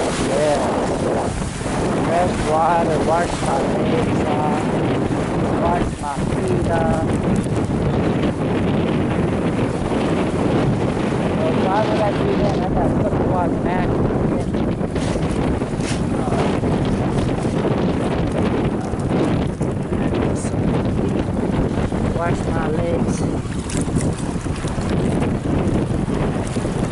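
Steady wind buffeting the microphone, mixed with the wash of surf breaking on a pebbly beach.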